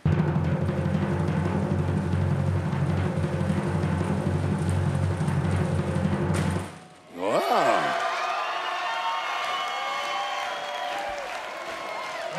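A low drum roll, like a timpani roll, for almost seven seconds, stopping short: the requested drum roll building to a reveal. Right after it a sustained musical fanfare swells in and holds.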